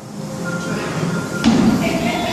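An athlete's feet landing on a plyo box during a box jump: a single thump about one and a half seconds in, with music playing faintly.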